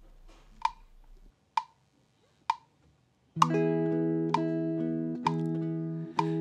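GarageBand metronome clicking at about 65 beats a minute: a one-bar count-in of four clicks, then an electric guitar chord comes in a little past halfway and rings on under the continuing clicks.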